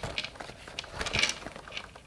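Leather card holder being slid into a leather Saint Laurent Lou mini camera bag: faint scraping and rustling of leather against leather, with a slightly louder scuffle about a second in.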